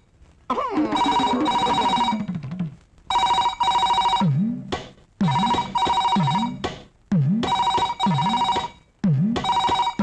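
A telephone ringing in a repeated double ring, one ring-ring about every two seconds, with a low sliding tone between the rings. A falling glide sounds under the first ring about half a second in.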